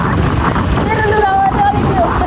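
Wind buffeting the microphone in a steady rough rumble, as on a moving open vehicle, with a drawn-out, slightly falling call from a voice over it about halfway through.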